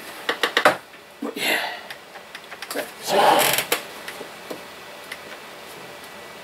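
Plastic clicks and knocks from a battery road barricade lamp being handled, its top clipped down onto the base and the lamp tilted while hunting for a loose battery contact. There is a quick run of clicks in the first second, scattered lighter clicks after, and a brief louder rush of noise about three seconds in.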